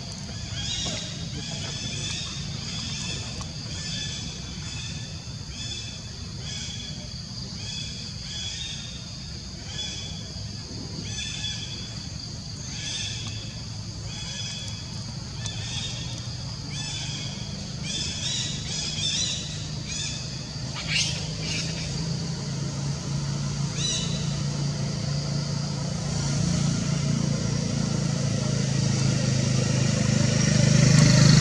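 Outdoor ambience: a short high-pitched call repeats in a steady rhythm, about one and a half times a second, over a low engine drone that grows louder over the last third.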